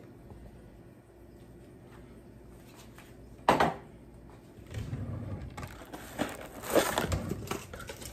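A single sharp knock about three and a half seconds in, followed over the last few seconds by irregular crinkling and rustling noises with no steady motor tone.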